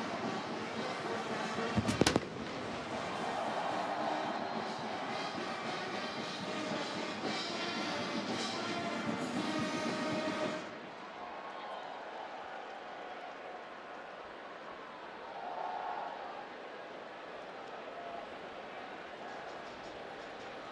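A vintage field artillery cannon fires a single blank shot about two seconds in, followed by the noise of a stadium crowd. The crowd noise drops to a lower level about ten seconds in.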